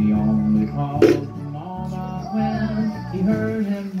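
Electronic toy bear playing a sung children's tune in held, stepping notes, with a single knock about a second in.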